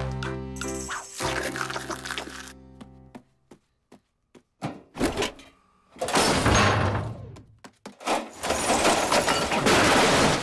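Cartoon soundtrack: background music for about the first three seconds, then a near-silent gap with a few sharp knocks, then loud noisy sound effects in two long bursts, the first about five seconds in and the second about eight seconds in.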